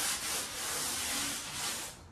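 3M sanding pad rubbed back and forth by hand over a dried coat of primer on a wall: a light hand sanding to knock down specks and bubbles. A steady scratchy rubbing that tails off near the end.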